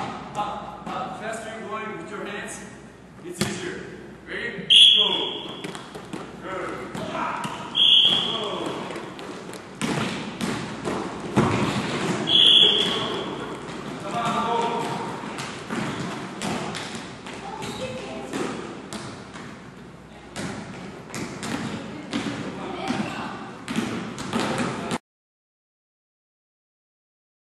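Basketball practice: indistinct voices over repeated thuds of a basketball on a gym floor, with three short high squeaks about 5, 8 and 12 seconds in. The sound cuts off abruptly about a second before the end.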